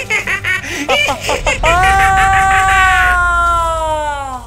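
A cartoon ghost's exaggerated, theatrical laugh: quick rhythmic 'ha-ha' bursts, then about a second and a half in, one long drawn-out laugh that slowly falls in pitch and fades away at the end.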